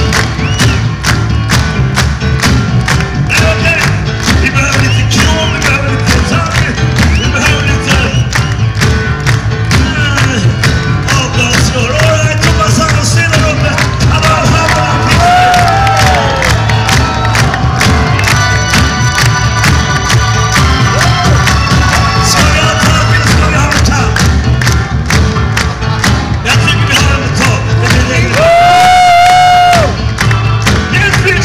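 Live rock band playing through a PA: electric guitars, bass and drums with a steady beat, heard loud from within the audience. A louder held note comes near the end.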